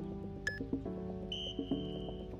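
Background music over interval-timer beeps: a short countdown beep about half a second in, then a longer, higher beep about a second later that marks the end of the workout interval and the switch to rest.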